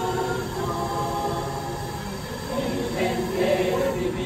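Choir singing a cappella in held chords, thinning briefly about two seconds in before the voices swell again.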